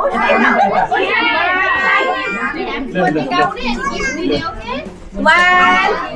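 Several people, children among them, talking and calling out over one another in a busy room, with one voice loudest near the end.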